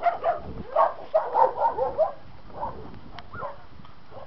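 A dog barking in a fast run of short, loud barks over the first two seconds, then two or three more, weaker ones.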